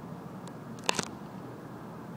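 Two sharp clicks close together about a second in, handling clicks from a handheld traffic radar gun, over a steady low hum inside a vehicle.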